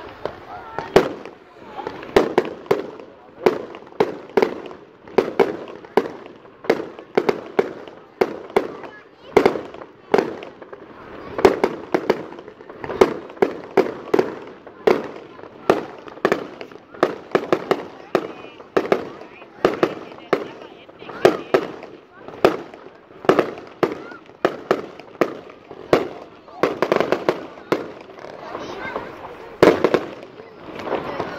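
Fireworks display: aerial shells bursting in quick succession, a sharp bang about once or twice a second with crackle between.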